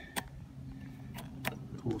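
A few short clicks from the power button of a battery-powered Hurst eDraulic rescue cutter being switched on and off, over a faint low steady hum. The tool still powers up after being submerged in floodwater.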